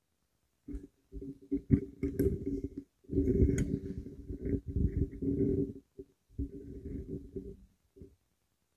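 Microphone handling noise: low rumbling and knocks in irregular bursts as a microphone is moved and positioned on its stand.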